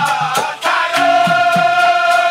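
Dikir barat singing: male voices hold one long, steady sung note after a brief break about half a second in. Quick, regular percussive strokes and low drum beats keep the rhythm underneath.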